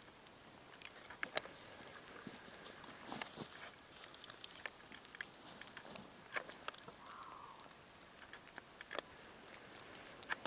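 Faint, irregular small clicks and ticks, some close together, over a quiet hiss, with a brief soft rustle about seven seconds in.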